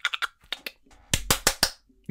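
Four quick, sharp hand slaps about a second in, about five a second, with fainter clicks before them.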